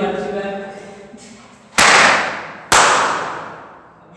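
Two balloons bursting about a second apart, each a sharp bang followed by a long echo off the bare concrete walls.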